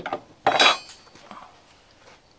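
Steel parts of an M3 submachine gun and its wire stock clinking as they are handled: a light click at the start, a louder ringing metal clank about half a second in, and a fainter knock a little after a second.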